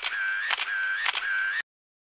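Camera shutter sound effect repeating about twice a second, each click followed by a short whir like a motor-drive film advance. It cuts off abruptly to silence about a second and a half in.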